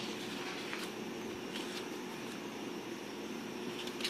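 Steady low room hum with a few faint rustles and slides of paper sticker sheets being shuffled by hand.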